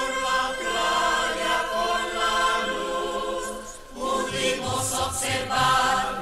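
Music: voices singing a song with instrumental accompaniment.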